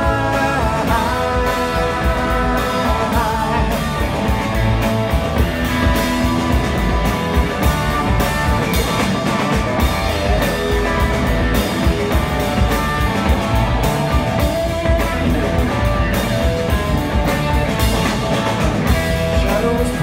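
Live rock band playing loudly on electric guitar, bass guitar and drums, with a steady driving beat, as heard from the audience through the venue's PA.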